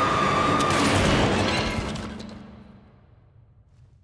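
A cartoon sound effect: a loud, harsh blast-like noise with a held high shriek as the animated monster lunges and is shot at. It dies away over about two seconds to near quiet.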